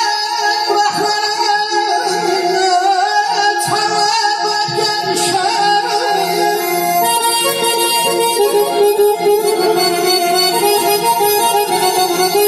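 Garmon, a small button accordion, playing a melody live with sustained reedy chords, over a steady low repeating beat.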